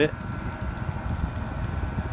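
Chinese 12-volt diesel air heater running at full power: a steady, noisy blower-and-burner rumble with a faint steady whine over it.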